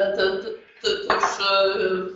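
Speech only: a speaker hesitating, repeating a short word several times in halting chunks.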